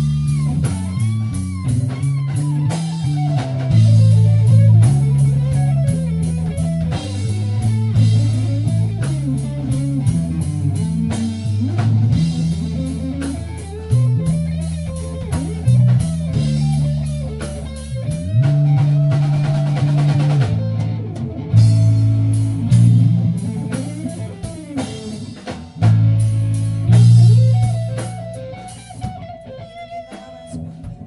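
Live band playing: electric guitar, bass guitar and drum kit, with a loud moving bass line, heard from among the audience in a reverberant room. The music drops in level near the end.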